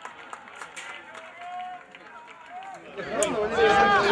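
Faint voices calling out across a rugby pitch. About three seconds in, loud shouting voices come in with a low wind rumble on the microphone.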